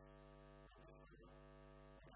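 Near silence with a faint, steady electrical mains hum.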